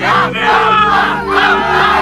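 A group of young people shouting and yelling together, the voices piling into a continuous crowd cheer by the end, over music with sustained low notes.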